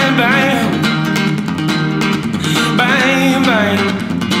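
A white Telecaster-style solid-body electric guitar being strummed in a live solo performance. A male voice sings short gliding runs over it near the start and again about three seconds in.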